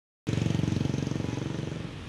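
City road traffic that cuts in suddenly about a quarter second in: a motor vehicle's engine close by with a fast, even low pulse, fading as it moves away over a steady hiss of traffic.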